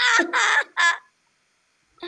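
High-pitched laughter in three short, loud bursts within about the first second.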